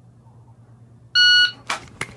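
Shot timer's start beep: a single steady electronic tone lasting about a third of a second, a little over a second in. A short scuff follows right after it as the pistol is drawn from the holster.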